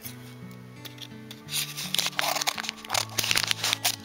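Pink paper packaging crinkling and rustling as it is handled and opened, over background music. The paper noise grows loud and crackly about one and a half seconds in.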